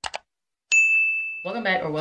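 Subscribe-button sound effect: a quick click, then a single bright bell-like ding that rings clear and steady for almost a second.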